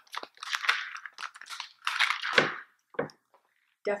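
Rustling and light clicks of a plastic ballpoint pen being picked up and handled close to the microphone, in a few irregular bursts.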